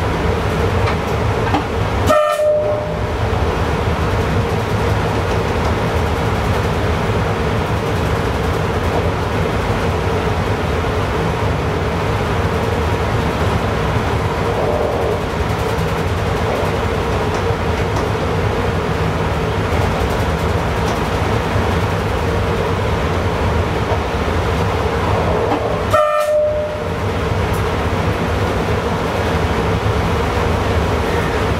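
Train running at speed, heard from inside the driver's cab: steady running noise with a constant hum. Twice, about two seconds in and again near the end, a brief sharp break with a short tone cuts through.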